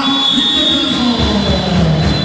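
Loud, dense basketball-gym din with music in it, and a held high-pitched tone from about half a second in, strongest for about half a second and fading after.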